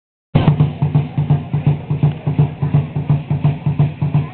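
A large drum beating a steady, quick pulse of about three strokes a second, the driving beat for Aztec-style dancing. It starts abruptly a moment in.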